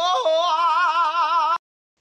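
A single unaccompanied voice singing a held, ornamented phrase with a wide, fast vibrato; the pitch dips and then settles. It cuts off abruptly about three-quarters of the way through.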